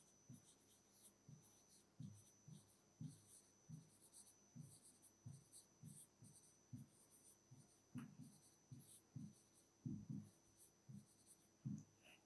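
Faint, irregular tapping and scratching of a pen writing on an interactive whiteboard screen, stroke by stroke.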